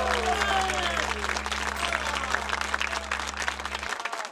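Theater audience applauding and shouting at the end of a song, over a low held note from the backing track that cuts off just before the end.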